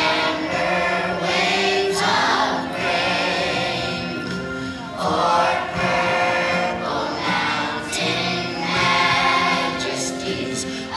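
Children's choir singing together, in held phrases that start afresh about every three seconds.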